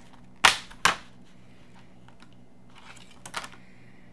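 Plastic Tombow dual-tip markers being handled: two sharp clicks about half a second apart early on, then a few faint clicks near the end.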